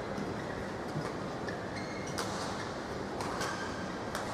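Badminton rally: sharp racket strikes on the shuttlecock about two seconds in and again about a second later, with short high shoe squeaks on the court floor over a steady hall background noise.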